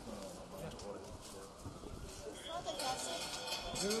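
Several people talking in the street, with the voices louder from about halfway, among scattered footsteps and light knocks on the pavement.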